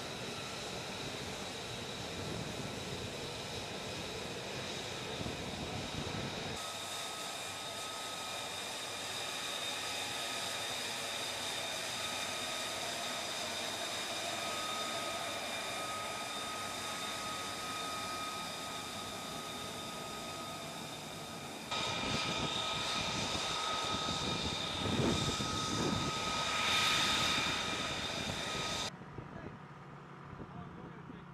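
F-35B's jet engine whining at ground idle, a steady high whine over a rushing noise. It gets louder from about two-thirds of the way in, and the sound changes abruptly twice where the footage is cut.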